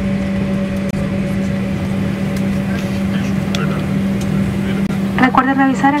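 Cabin noise of a jet airliner taxiing after landing: a steady wash of engine and air noise with a low steady hum through it.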